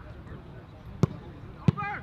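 A football kicked twice, two sharp thuds about two-thirds of a second apart, the second followed at once by a short shout from a player.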